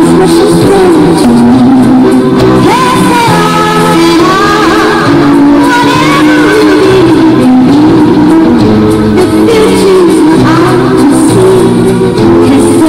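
Music: a song with a voice singing a wavering melody over steady sustained instrumental backing, loud throughout.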